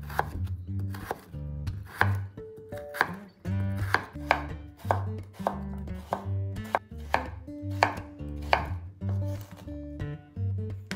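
Kitchen knife chopping raw peeled potato on a wooden cutting board. The blade knocks against the board in an irregular run of about two to three strikes a second, with background music underneath.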